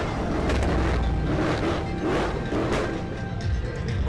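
Mercedes C63 AMG coupe's V8 giving a deep rumble as it is driven hard past, with several sharp cracks through it, typical of an AMG exhaust crackling on a showy rev.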